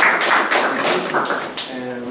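Audience applauding, dense clapping that dies away about a second and a half in.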